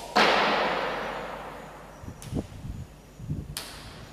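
A sudden swishing noise that fades away over about two seconds, followed by a few soft low thumps.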